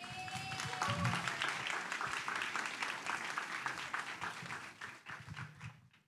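Audience applauding over background music, the sound fading away near the end.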